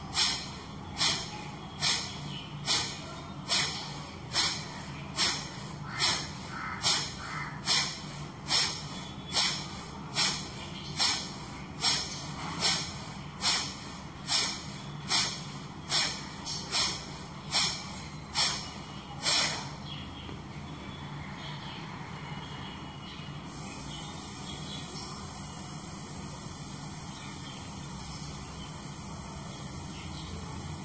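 A woman's forceful nasal exhalations in kapalbhati breathing: sharp, even puffs a little faster than one a second, each of the same strength, keeping speed and force constant. The strokes stop about twenty seconds in.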